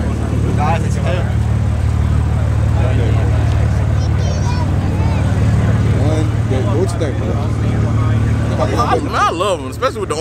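Steady low hum of idling car engines, with scattered voices of people talking nearby, louder near the end.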